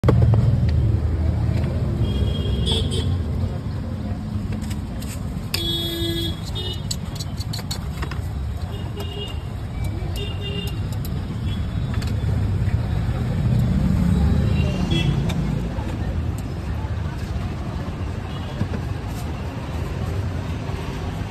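Roadside traffic: a steady rumble of passing engines and tyres, with short vehicle horn toots, the clearest about three and six seconds in.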